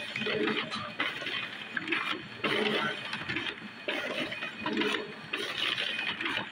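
Multifunction printer feeding sheets of paper through, its rollers and gears running in a repeating cycle of about one sheet a second.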